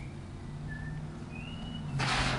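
A quiet lull with a low steady hum and two brief, high, thin chirps, the second rising in pitch.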